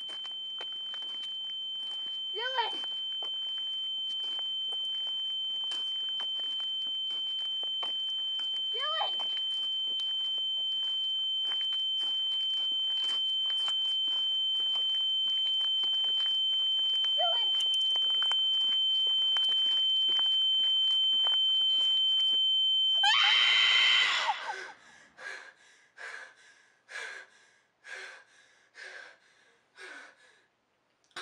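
A steady, high-pitched ringing tone slowly swells louder, with a few brief rising sounds over it. About 24 seconds in it cuts off into a loud scream, followed by quick, heavy panting gasps.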